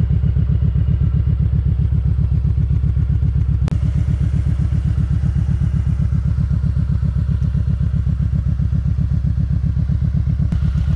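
Kawasaki Vulcan 1700 Vaquero's V-twin engine idling steadily, with an even, rapid pulse from the exhaust.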